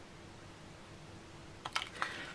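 Quiet room tone, then a few light plastic clicks in quick succession near the end as a hot glue gun is handled and moved away.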